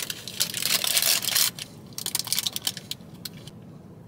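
Paper sandwich wrapper crinkling and rustling as it is handled, dense for the first second and a half, then scattered crackles.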